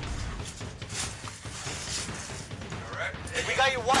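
Body-camera audio beside a burning house: a steady rushing noise with many small crackles and a low rumble, from the house fire and the wearer moving, with the microphone rubbing on clothing. A man's voice starts near the end.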